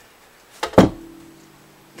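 A sharp knock about a second in, on a Telecaster-style electric guitar, sets its open strings ringing; the strings sound steadily for about a second and then die away.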